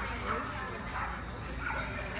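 Small dog yipping and barking repeatedly while running an agility course, with voices in the background.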